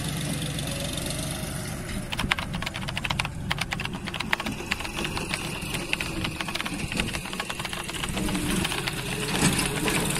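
A backhoe loader's diesel engine runs steadily while its bucket digs into dry soil. From about two seconds in, a dense run of rapid clicks and crackles lasts roughly three seconds, then thins out.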